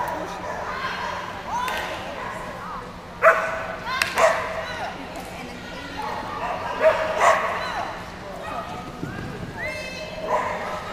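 A dog barking sharply several times, in two groups of two or three barks, over background voices.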